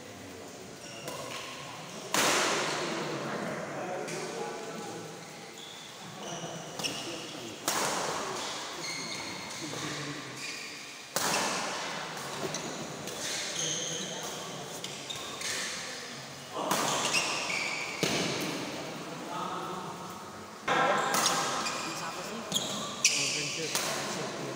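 Doubles badminton play in a large indoor hall: rackets striking the shuttlecock and shoes on the court floor, under spectators' voices. Several sudden loud bursts of sound ring out and fade away over a second or so, each time echoing in the hall.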